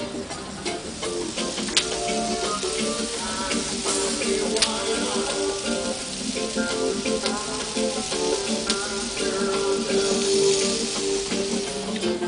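Music playing over meat sizzling on a charcoal grill, with a steady hiss and a couple of sharp crackling pops from the fat and embers.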